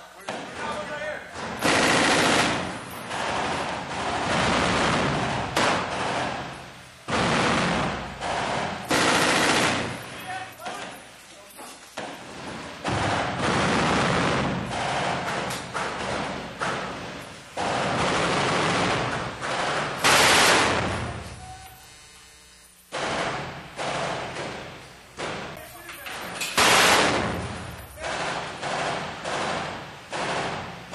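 Belt-fed M240 machine guns firing in a room, bursts of automatic fire lasting from about a second to several seconds with short lulls between them, the longest lull about two-thirds of the way through.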